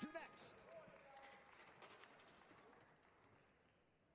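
Near silence: faint arena room tone with a few scattered light knocks, fading away. At the very start the end-of-round horn's sustained tone cuts off.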